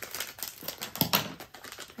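Foil blind-bag packets being handled, crinkling in quick, irregular clicks, with a louder crinkle about halfway.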